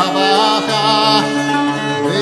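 An early-music ensemble playing: a wavering melody with vibrato over held lower notes, and several note changes in the middle.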